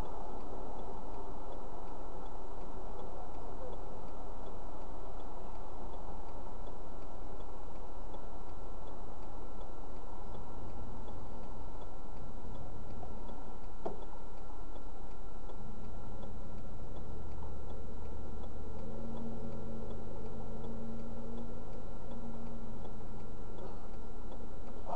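Inside a stopped car's cabin, the hazard-light flasher ticks at a steady, even pace over the hum of the idling engine. A deeper engine drone joins in past the middle.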